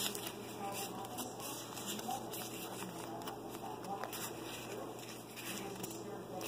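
Pokémon trading cards being slid and flipped through by hand: soft rustling with scattered light ticks of card stock rubbing and snapping against the other cards.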